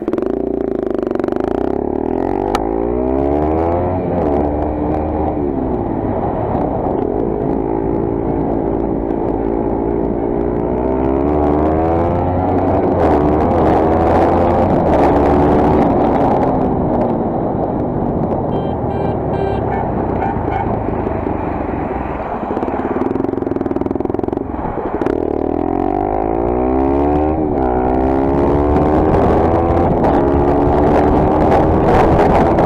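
Motorcycle engine pulling away and accelerating through the gears: the pitch climbs, drops at each upshift, and climbs again. There is a steadier cruising stretch in the middle and another run of upshifts near the end, under road and wind noise.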